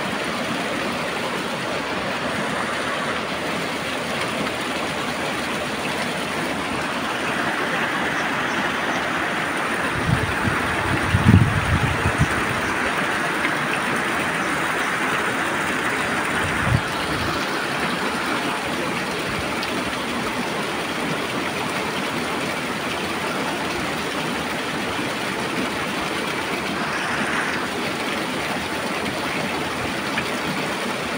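Steady rushing of a stream running over rocks, with a few brief low thumps about ten to twelve seconds in and once more a few seconds later.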